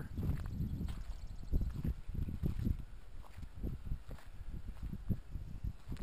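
Irregular low thuds and rustling close to the microphone: the footsteps and handling noise of someone walking with a hand-held camera.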